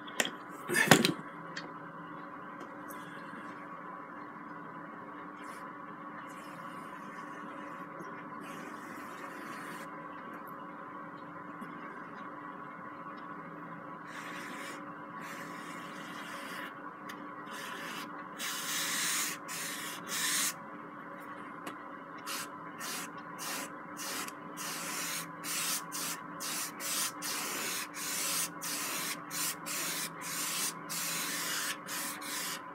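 Flat brush scrubbing oil paint onto canvas in quick back-and-forth strokes, about two a second, louder in the second half. A single knock about a second in, over a faint steady room hum.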